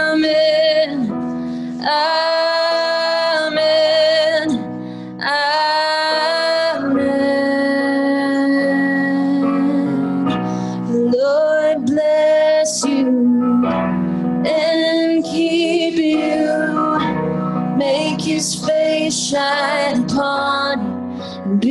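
Women singing a worship song to electric keyboard accompaniment, in phrases of long held notes with short breaks between them.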